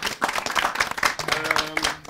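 Studio audience applauding, the clapping thinning toward the end, while a held pitched sound comes in over the last second.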